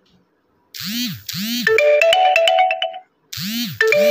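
A smartphone message-alert tone announcing the incoming Paytm OTP text: two quick swoops, then a short stepped tune of pitched notes. The jingle plays twice, starting again just after the first one ends.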